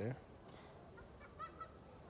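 A man's voice finishes a short phrase right at the start. The rest is quiet outdoor background, with a few faint, short high chirps about a second and a half in.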